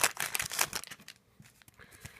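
Foil wrapper of a trading card pack crinkling and crackling as it is peeled open, loudest in the first second, then fading to faint rustles as the cards are handled.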